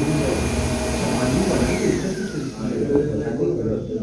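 A steady machine whir that dies away about two-thirds of the way in, under indistinct background voices.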